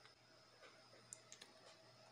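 Near silence: room tone, with a few faint, brief clicks in its second half.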